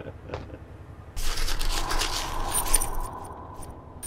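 A light tap, then about two seconds of rustling with small metallic jingles toward its end.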